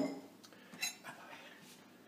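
A single light clink with a brief ring a little under a second in, then the faint scrape of a table knife spreading tomato sauce over puff pastry.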